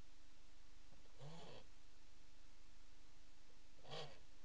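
Two short, low vocal sounds, one about a second in and a briefer one near the end, over a faint steady hum.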